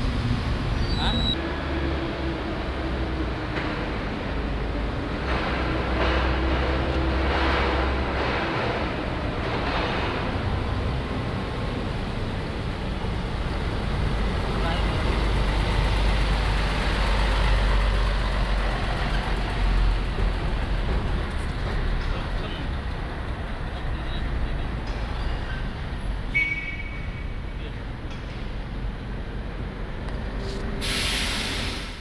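Strong gusty wind buffeting the microphone as a steady low noise, swelling briefly in the middle as a whirlwind lifts ash from a burnt-out fire pit.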